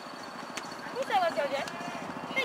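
High-pitched voices of softball players calling out in a rising and falling sing-song about a second in, with a sharp click shortly before.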